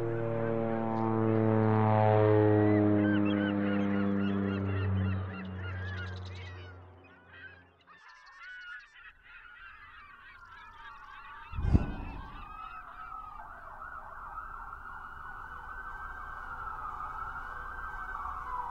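Low sustained tones step down in pitch over bird chirps for the first several seconds. After a short lull comes a single loud thump just before the twelve-second mark. Then an emergency-vehicle siren wails up and down.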